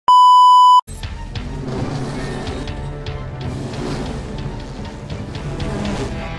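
A loud, steady broadcast reference test tone, the beep that goes with colour bars, held for just under a second and cutting off sharply. Then a commercial's background music with scattered percussive hits runs on.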